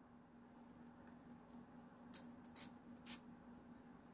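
Three quick spritzes from a water spray bottle, short hisses about half a second apart, misting dried gouache to rewet and reactivate it.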